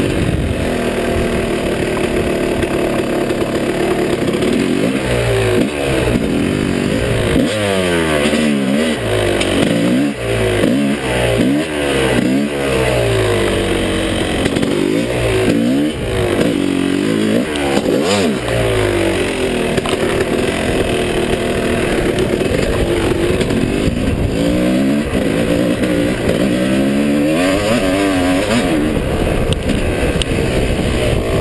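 A 2005 Yamaha YZ250's two-stroke single-cylinder engine, heard from on board while riding, revving up and dropping back over and over under throttle and gear changes. It rises and falls most often through the middle stretch and runs steadier near the start and end.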